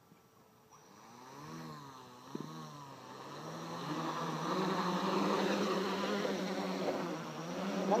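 Homemade tricopter's electric motors and 11-inch propellers spinning up from rest: a pitched buzz that rises and falls twice with short throttle blips, then climbs and holds loud and steady at takeoff throttle as the craft lifts off.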